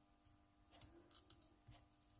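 Faint, sparse clicks and scratches of a fine pointed metal tool cutting into the copper shield on an Oppo A5s phone's logic board, most of them in the second half.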